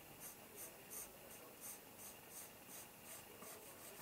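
Coloured pencil scratching faintly on paper in a string of short strokes, about two or three a second, as a drawn outline is traced over a second time.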